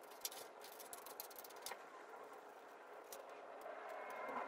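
Scissors cutting through cardstock: faint, irregular snips and paper rustle.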